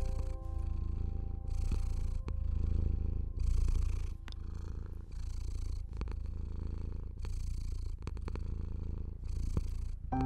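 A domestic cat purring close to the microphone: a steady low rumble that swells and dips about once a second as it breathes in and out.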